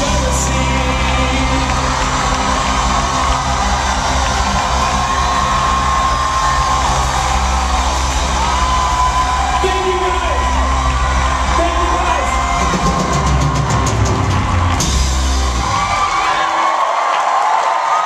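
Loud music with singing over a whooping, cheering crowd. The bass drops out about two seconds before the end.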